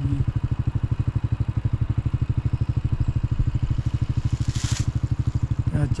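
A small engine idling steadily, a low even throb. A brief hiss comes about four and a half seconds in.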